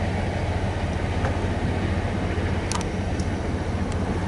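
Vehicle engine idling with a steady low hum, under the rolling noise of the tail end of a freight train of tank cars passing the crossing, with one short click about two and three-quarter seconds in.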